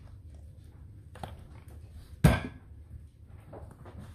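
Ketchup squeeze bottle being put down: a light click about a second in, then one sharp knock about two seconds in.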